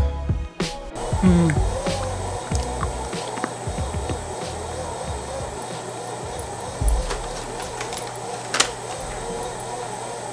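Background music. The track changes abruptly about a second in, and a couple of light clicks come later.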